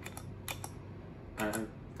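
Guitar-pedal footswitches clicking as they are stepped on to change presets on a modulation multi-effects pedal: about four short, sharp clicks in the first second.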